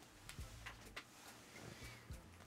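Near silence: room tone with a low hum and a few faint, short clicks.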